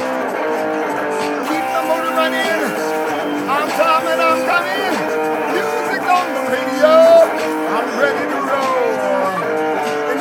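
Solid-body electric guitar strummed and picked, its chords ringing on steadily, with a man's voice over it.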